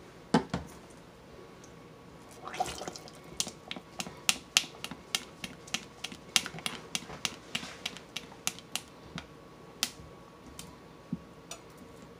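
A utensil clicking against the side of a pot while stirring thick candy syrup, mixing in freshly added food colouring: a run of sharp, irregular clicks, a few a second, that thins out near the end.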